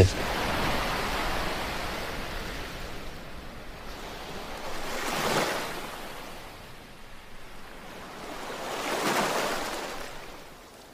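Sea waves washing onto a beach: a steady rush of surf, with one wave swelling and breaking about five seconds in and another near the end.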